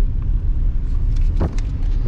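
Steady low rumble of a moving car heard from inside the cabin: engine and road noise. A brief sharp sound comes about one and a half seconds in.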